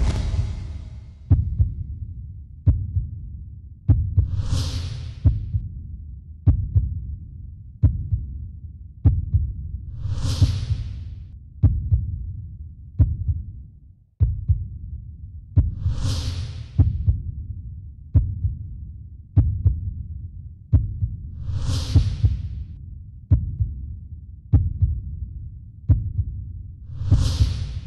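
Background music made of a deep, heartbeat-like thud about every 1.3 seconds. An airy swish swells and fades about every six seconds over it.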